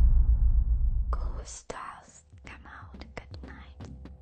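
Deep rumble of an intro logo sound effect dying away, then a person whispering from about a second in.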